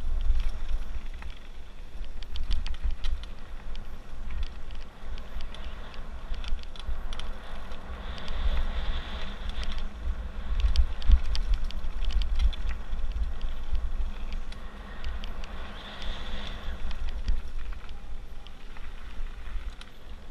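Mountain bike rolling fast down a gravel trail: tyre noise on the gravel with many small rattles and clicks from the bike over bumps, under a heavy low rumble of wind buffeting the camera microphone.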